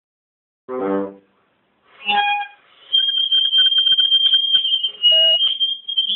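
Bassoon played at full volume: a short low note, a second brief note about two seconds in, then from about three seconds a long, piercing high tone with a fluttering undertone.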